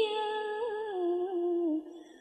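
A single voice holding a long, wavering note at the tail of a chanted verse line in Vietnamese ngâm-style recitation. It steps down in pitch and fades out near the end.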